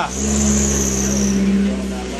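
Off-road 4x4's engine running at steady high revs under load on a steep dirt climb, easing off slightly near the end.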